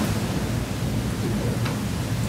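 Steady hiss with a low rumble: room noise in a pause between speech.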